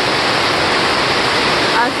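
Heavy rain pouring steadily on the surrounding vegetation, an even hiss loud enough to drown out a voice.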